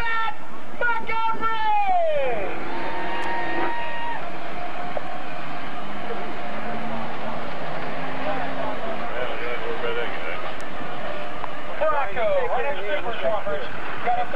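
A Chevrolet pickup's 350 V8 running as the truck drives into a mud pit and bogs down, stuck nose-first in the mud. The engine holds steady notes for a few seconds at a time under a constant haze of noise, with people's voices and shouts over it near the start and again near the end.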